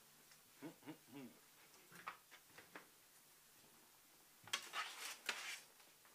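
Quiet handling noise as musicians ready their instruments between songs: a short vocal sound in the first second, then a brief bright rattle and clatter about four and a half seconds in.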